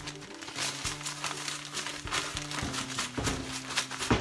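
Plastic zip-top bag crinkling as fish fillets are shaken and worked inside it to coat them in dry breading mix, with background music playing.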